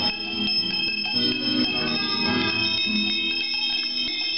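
Small metal hand bells shaken by several young children at once, a steady mix of overlapping rings and strikes with high tones that hang on throughout.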